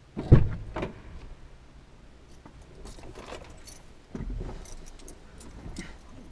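A car door is opened and the driver squeezes into the seat, heard from inside the cabin. A sharp thump just after the start is the loudest sound. Then come keys jangling, clothing rustling and small clicks, and a heavier thump about four seconds in as he drops into the seat.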